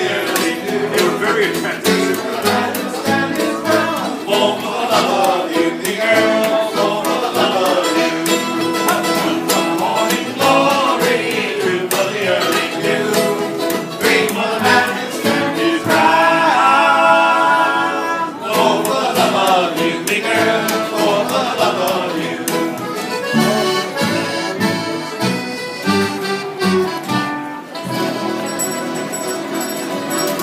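Live acoustic band playing a sea shanty: accordion carrying the tune over strummed acoustic guitar and plucked upright bass.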